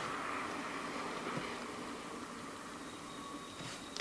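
Quiet, steady background noise (room tone) that fades slightly, with no distinct sound events.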